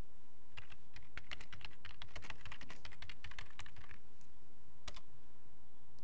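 Computer keyboard typing: a quick run of keystrokes lasting about three seconds, then a single key press about a second later.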